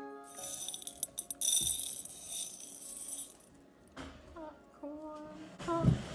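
Dried blue popcorn kernels clattering and rattling against a glass bowl as they are handled. The rattle runs for about three seconds, then stops.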